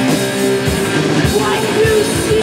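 Live rock band playing: electric guitars, bass guitar and drum kit, with regular drum hits under a steady wall of guitar.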